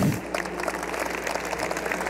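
Audience laughing and clapping, loudest right at the start and then carrying on as a spread of scattered claps and laughter.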